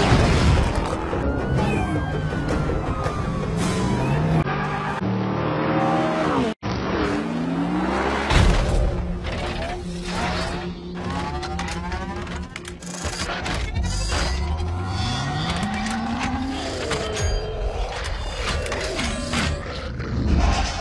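Action-film soundtrack mix: dramatic score under explosions, crashing and shattering metal, and car and mechanical sweeps, with many sharp impacts. The sound cuts out for an instant about six and a half seconds in.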